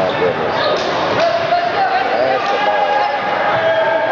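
A basketball bouncing on a hardwood gym floor as it is dribbled, under a constant background of spectators' voices and calls.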